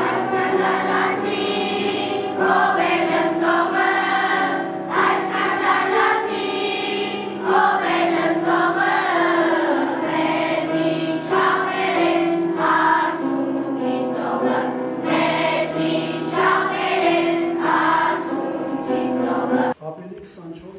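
A children's school choir singing a song together; the singing cuts off suddenly just before the end.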